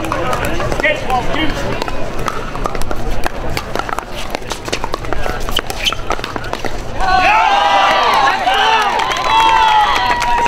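Sharp pops of pickleball paddles striking a plastic ball during a rally, then many spectators' voices rising at once about seven seconds in as the point ends.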